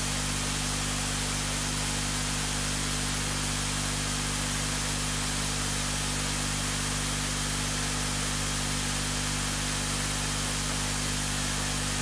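Steady hiss with a low hum beneath it, unchanging throughout, with no other sound.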